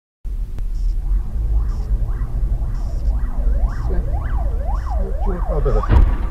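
Emergency vehicle siren in a fast up-and-down yelp, about two sweeps a second, growing louder as it nears, over the low rumble of the dashcam car. A sudden loud bang comes right at the end.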